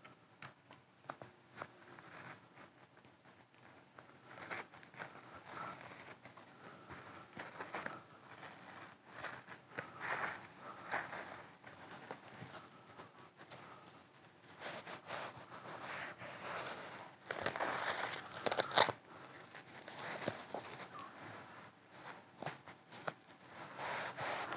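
Fabric lining being pressed and rubbed by hand onto sticky, glued foam, with quiet, irregular rustling and tacky crackling as it is smoothed into place and peeled off the glue. The loudest bursts come about three quarters of the way through.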